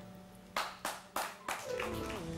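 A few hand claps, about four quick ones roughly a third of a second apart, followed by music starting near the end.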